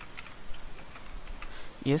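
Computer keyboard typing: a handful of separate keystrokes, spaced irregularly.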